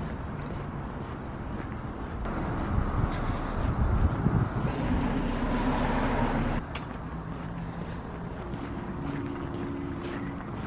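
Outdoor city street ambience: wind rumbling on the microphone over the noise of road traffic. It grows louder through the middle and drops suddenly about two-thirds of the way in.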